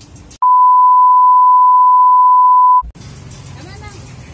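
A loud, steady, single-pitch beep of about 1 kHz, added in editing, starts about half a second in and cuts off at about three seconds. All other sound is muted beneath it, the usual sign of a censor bleep laid over speech. Background market noise resumes after it.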